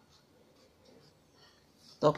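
Faint scratching of a pen on paper in a few short strokes, marking a geometry drawing.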